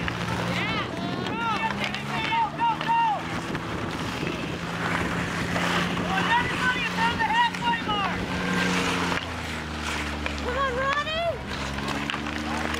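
A motor running with a steady low hum, its pitch shifting about nine and a half seconds in, under several short bursts of high shouting voices.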